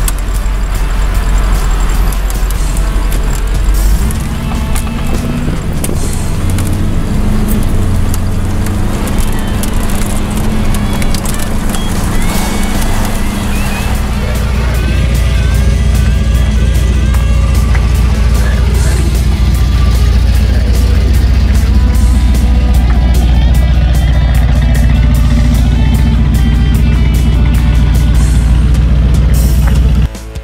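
Background music mixed over the steady engine and road rumble of a Pontiac Trans Am KITT replica.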